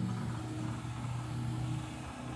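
A steady low hum from a running machine, with no change through the pause.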